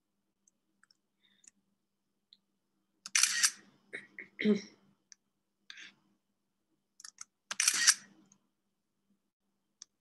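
Computer screenshot shutter sound, played twice about four and a half seconds apart as screenshots are taken. A throat clear comes between them, and faint mouse clicks sound around them.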